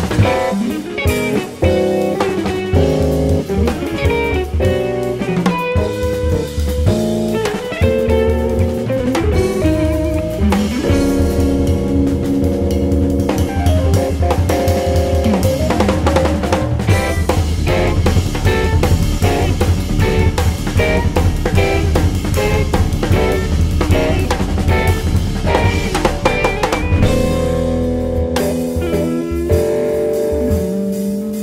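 Jazz-fusion band playing live: electric guitars, bass, keyboard and a busy drum kit.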